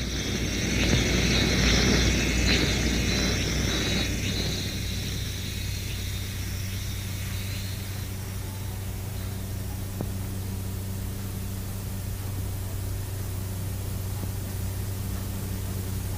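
A passing vehicle's rushing noise swells to a peak about two seconds in and fades away by about six seconds, leaving a steady low hum under faint background noise.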